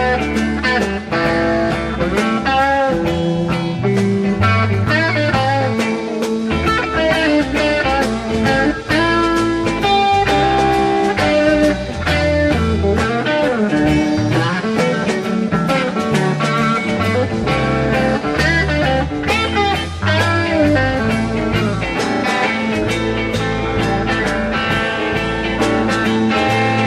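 Rock band playing live in an instrumental guitar solo: a lead electric guitar plays bending, sustained notes over bass, drums and rhythm guitar.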